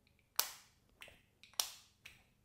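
Magnetic cap of a Bleu de Chanel perfume bottle snapping onto the bottle: two sharp clicks about a second apart, with a fainter click between them.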